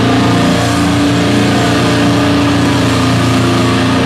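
Metal band playing live, with distorted electric guitars holding a loud, steady, ringing chord and little drumming.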